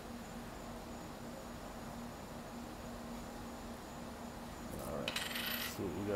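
Faint room tone with a steady low hum, then near the end a brief rustling scrape of a paper scratch-off ticket being slid and picked up off a wooden table.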